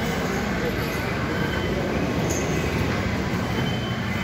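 Steady low rumbling background noise, even and unbroken, with indistinct voices mixed in.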